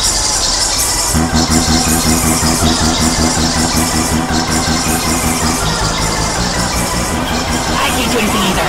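Many copies of a cartoon's soundtrack layered on top of each other and heavily effected: a loud, dense clash of music and voices. A steady low droning tone sets in about a second in and fades a little past the middle.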